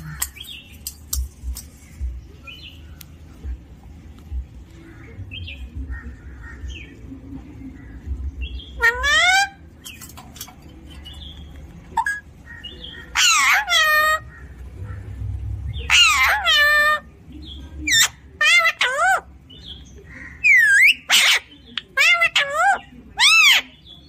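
Alexandrine parakeet vocalizing in a run of loud, pitched bursts, each under a second and swooping down and up in pitch, starting about nine seconds in. Before that there are only faint clicks and a low rumble of handling.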